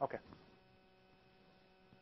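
A man's brief spoken "okay" at the start, then a faint steady electrical hum with nothing else.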